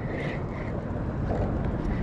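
Steady wind buffeting the microphone, a continuous low rumble with a faint hiss above it.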